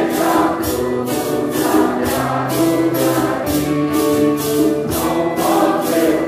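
A congregation of men and women singing a Portuguese Santo Daime hymn together, with maracas shaken in a steady beat.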